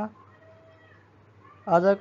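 Near silence except for faint room noise in a pause of a speaking voice; the voice resumes with a word near the end.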